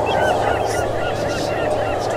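Many birds calling at once, with short chirping calls overlapping over a steady low hum.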